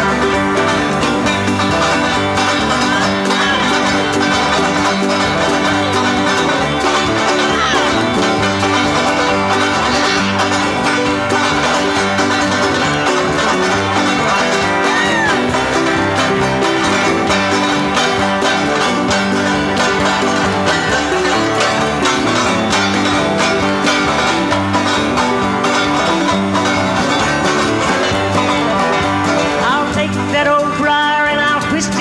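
Banjo strummed with a country-bluegrass backing band during an instrumental break between sung verses, the band playing a steady, loud rhythm.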